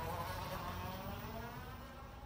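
Electric mobility scooter's motor whining as it drives away, fading steadily.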